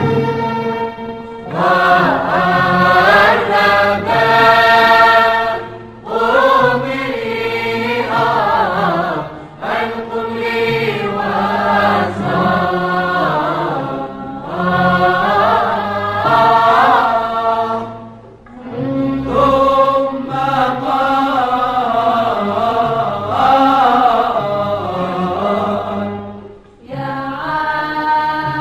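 A recorded excerpt of Tunisian nawba music: a sung melody with instrumental accompaniment, in long phrases broken by short pauses.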